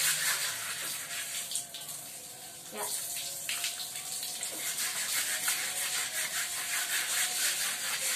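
Water pouring steadily from a garden hose onto a mat lying on a tiled floor, splashing as the mat is washed.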